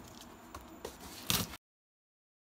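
Faint handling noise around a cardboard shipping box, with a small click and then a louder short scuff about a second and a quarter in; the sound then cuts off abruptly to dead silence.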